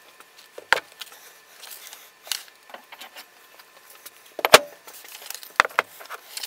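A few knocks and clunks as a heavy wooden cabinet and paving bricks are set down on a glued-up plywood panel to weight it while the glue sets, the loudest knock about four and a half seconds in.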